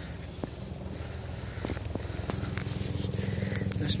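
A low engine hum with a fast, even pulse, growing steadily louder, with a few faint clicks over it.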